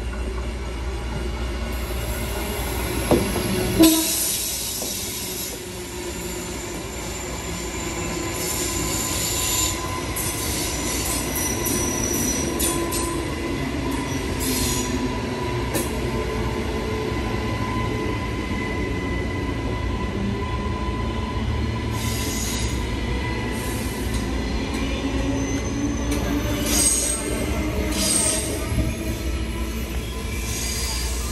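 Queensland Rail electric suburban train running past at close range: a steady rumble with a thin, even whine and high wheel squeal. Two sharp knocks come about three to four seconds in.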